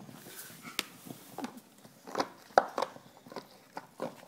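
English bulldog biting and chewing on a bottle: irregular sharp crunches and clacks of teeth on the bottle, the loudest about two and a half seconds in.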